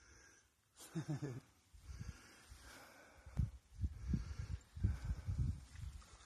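A short laugh about a second in, then irregular low rumbling buffets on the phone's microphone.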